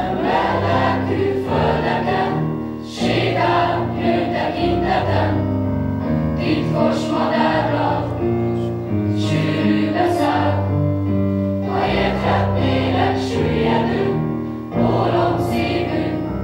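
Mixed choir of young voices singing a song in phrases, with short breaks between phrases about 3 and 15 seconds in.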